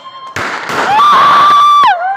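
Firework rocket launching: a sudden loud hissing rush, then a shrill whistle that rises, holds steady for about a second and drops away near the end.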